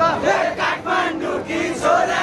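A crowd of young men chanting and shouting together in loud, rhythmic bursts.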